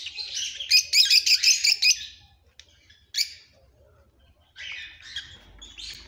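Caged aviary birds chirping: a dense run of quick high chirps for about two seconds, a lone chirp, a short lull, then chirping again near the end.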